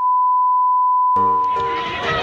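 A steady 1 kHz test-tone beep, the sound effect that goes with colour bars, fading out near the end. About a second in, a second, lower sound with several steady tones comes in under it.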